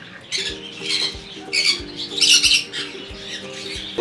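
A parrot giving a run of harsh squawks, about five of them, the loudest a little past halfway. Underneath runs background music with a steady beat.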